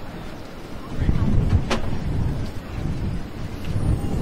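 A deep low rumble sets in suddenly about a second in and holds: the opening of the marching band's show from its front ensemble. A short sharp click sounds near the middle.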